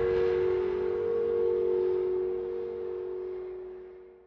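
Logo intro sound effect: a steady tone of two close pitches, ringing on after an opening hit and fading away near the end.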